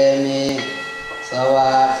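A brass singing bowl struck once about half a second in, then ringing on with several steady high tones. A man's chanting breaks off just before the strike and comes back in over the ringing near the end.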